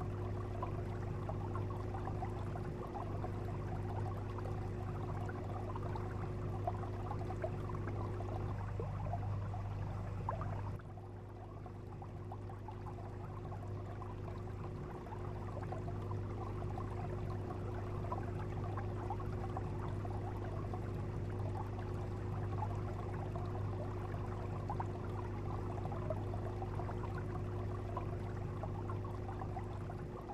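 Steady underwater ambience: a faint crackling, fizzing water noise over a low steady hum. It drops in level about eleven seconds in, then slowly builds back.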